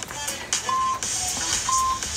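Interval timer beeping twice, a second apart, with short steady tones counting down the end of a Tabata work interval, over background music.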